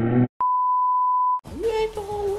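A boy's rising yell that cuts off abruptly, followed by a steady high-pitched electronic bleep tone lasting about a second, the kind dubbed over a word to censor it.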